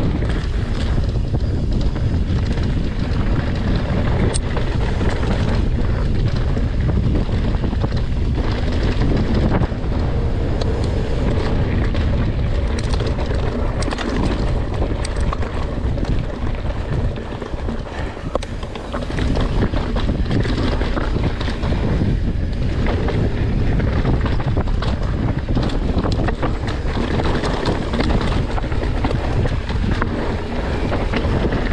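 Wind buffeting the microphone of a camera carried on a mountain bike descending fast, with tyre noise and rapid rattling clicks from the bike over rough trail. The wind eases briefly about two thirds of the way through.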